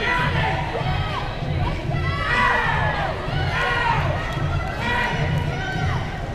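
Arena spectators shouting and cheering, many voices calling out and rising and falling over one another, over a low, regular thudding.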